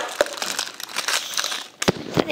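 Shrink-wrapped plastic slime tub being handled, its plastic wrap crinkling with scattered small clicks, then one sharp knock near the end.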